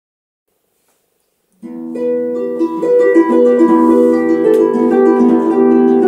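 Solo harp starting to play about a second and a half in, after silence: plucked notes in quick succession that ring on and overlap.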